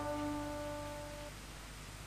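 Last plucked-string notes of a cải lương karaoke backing track ringing and fading out over the first second or so. A faint steady low hum remains after them.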